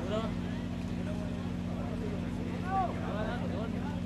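Scattered, faint voices of people talking over a steady low hum.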